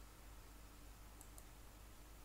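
Near silence: room tone with a couple of faint, short clicks a little over a second in.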